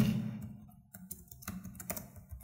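Computer keyboard being typed on: a few separate keystrokes, spaced about half a second apart.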